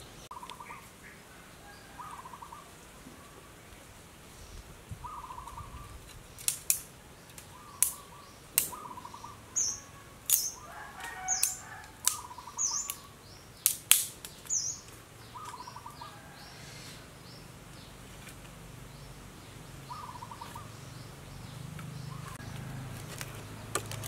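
A run of sharp snaps of dry twigs being broken by hand for kindling, loudest and most frequent in the middle, over small birds chirping repeatedly in the background.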